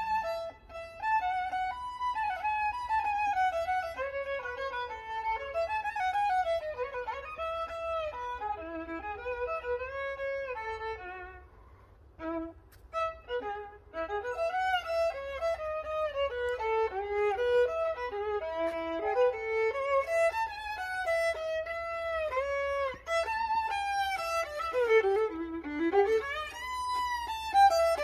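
Solo violin playing a flowing melody, often sliding from note to note, with a short break near the middle before the line picks up again.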